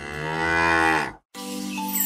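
A cow mooing once, one long call whose pitch drops at the end. Music with sustained notes starts a moment after it stops, near the end.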